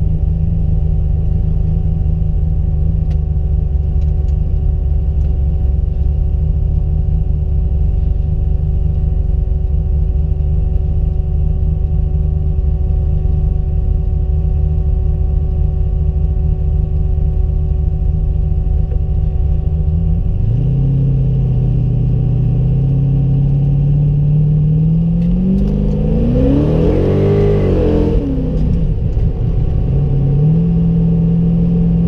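Carbureted V8 engine of a V8-swapped Mazda Miata, heard from inside the car, running with a steady low note for about twenty seconds. Then the pitch drops, climbs as the engine takes up speed, rises and falls in a quick rev near the end, and settles back to a steady note.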